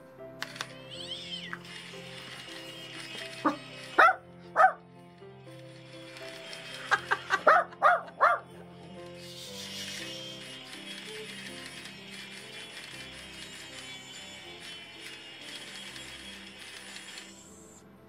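A tune played from a musical greeting card's sound chip, which cuts off suddenly near the end. A dog barks several times over it, in a pair and then a quick cluster about halfway through.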